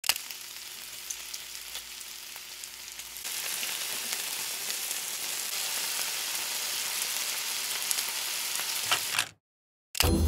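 Strips of bacon sizzling in a frying pan, with scattered crackles and pops of spitting fat. The sizzle grows louder about three seconds in and cuts off suddenly near the end.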